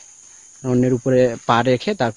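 A man speaking Bengali from about half a second in, over a steady high-pitched drone of insects.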